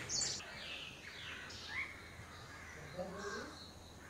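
Wild birds calling in woodland: a string of short calls, some high and chirping, some sliding in pitch, the loudest just at the start.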